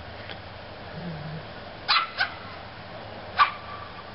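A young Lhasa Apso/Cocker Spaniel puppy barking in play with high, sharp yips: two in quick succession about two seconds in, then one more that trails off into a short whine.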